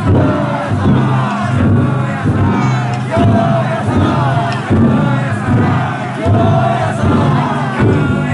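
A large crowd of festival-float bearers chanting and shouting together, the massed voices swelling in a rough rhythm about once a second.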